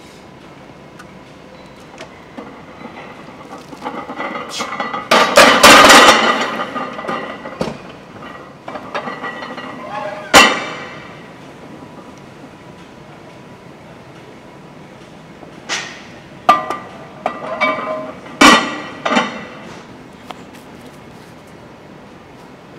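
Loud voices and straining over the end of a heavy barbell bench press, with the loaded bar racked among metallic clanks, loudest around five to six seconds in. A single sharp metal clang comes about ten seconds in. Near the end come several ringing clanks of cast-iron plates being handled on the loaded bar.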